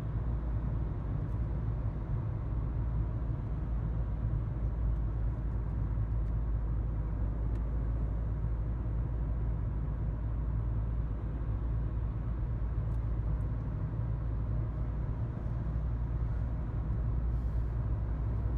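Steady low road and engine rumble of a car driving along at speed, heard from inside the cabin.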